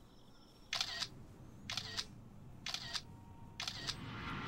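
Four short, sharp clicking noises about a second apart, evenly spaced: a rhythmic sound effect on the anime's soundtrack.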